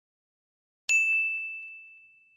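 A single bright, bell-like ding sound effect: the notification-bell chime of an animated subscribe button. It strikes about a second in and fades away over about a second and a half.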